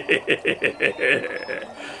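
A person laughing in a quick run of short pulses, about seven a second, trailing off about a second and a half in.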